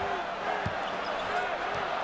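Basketball TV broadcast audio: arena crowd noise under a play-by-play commentator, with the ball being dribbled on the court.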